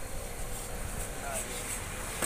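Roadside street noise: steady low rumble of traffic passing on the road, with faint voices in the background.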